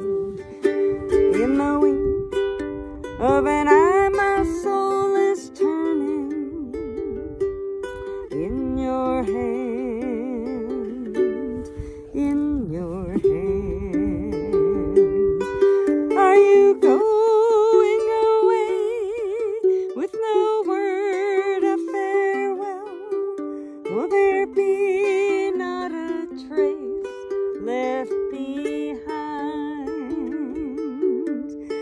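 Ukulele played with a woman singing a folk ballad over it, her voice wavering with vibrato on held notes. There are short breaks where only the ukulele sounds.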